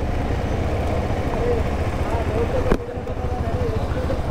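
KTM 390 Adventure's single-cylinder engine running at low revs, a steady low pulsing thrum, with one sharp click near the middle.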